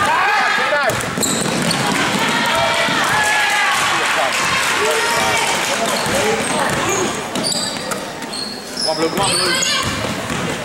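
A basketball dribbled on a hardwood gym floor during live play, with players' and spectators' voices and shouts in the hall.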